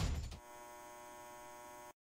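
The tail of the music ends, then a faint, steady electrical hum with many overtones holds for about a second and a half and cuts off suddenly just before the end.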